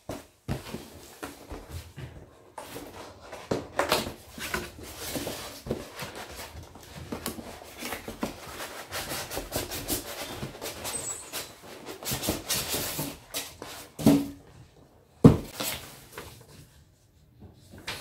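A cardboard box being opened and unpacked by hand: irregular rustling, scraping and small clicks of card and packaging, with a sharp knock near the end.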